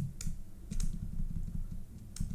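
Computer keyboard keys pressed a few times at an uneven pace, as a file name is edited, over a low steady hum.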